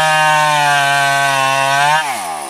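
Stihl two-stroke chainsaw held at high revs, its chain cutting through a teak log; the engine pitch sags a little under the load and recovers.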